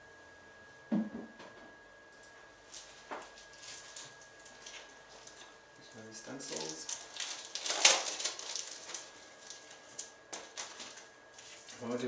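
Hands handling a plastic stencil and its clear packaging on a craft mat: a knock about a second in, then rustling and crinkling from about six to nine seconds, loudest near eight seconds, with a few light ticks after.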